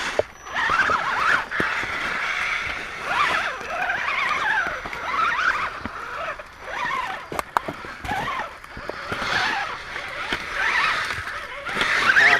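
Electric motors and gearing of RC rock crawlers whining, the pitch rising and falling over and over with the throttle as they climb over rock, with sharp clicks and scrapes of tyres and chassis on stone.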